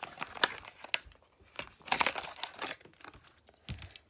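Plastic blister packaging and cardboard backing of a Hot Wheels car crinkling and crackling as it is handled, with a few sharp clicks; the crackling thins out after about two and a half seconds.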